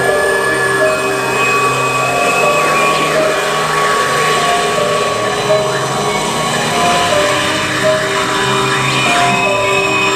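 Electronic music: held tones that step between pitches over a dense, droning noise.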